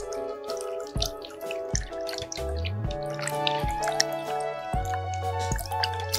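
Background music with held notes and a steady beat, over water poured from a plastic jug into a plastic basin, dripping and splashing.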